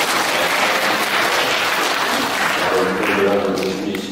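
Congregation applauding, a dense steady clapping that thins out near the end as a man's voice comes in.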